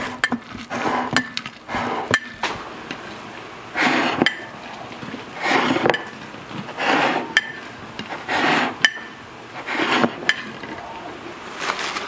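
A fist repeatedly pressing wet, salted shredded cabbage down into a glass jar to pack it and draw up the brine, a squelching crunch about every second and a half. Sharp clinks sound where the hand knocks the glass.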